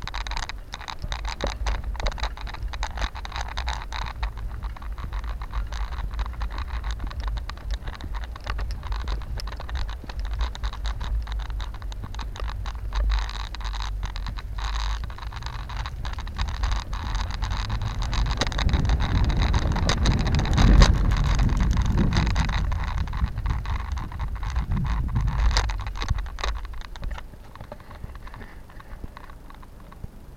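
Riding a bicycle on a paved path: a steady low wind-and-road rumble on the microphone, with frequent small clicks and rattles from the bike and camera. About two-thirds of the way through, a louder rumble swells and fades.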